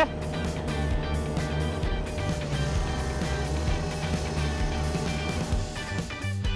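Background music with a steady beat over the steady running of a ride-on reel mower's engine as it cuts grass.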